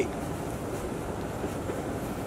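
Steady low background noise, an even rumbling hiss, with a faint click near the end.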